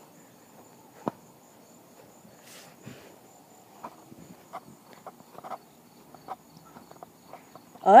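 Footsteps through grass, light scattered rustles mostly in the second half, over a steady high-pitched trill of insects.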